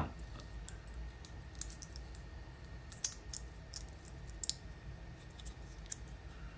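Scattered light clicks and taps from a small 3D-printed plastic clip being handled in the fingers, over a faint steady low hum.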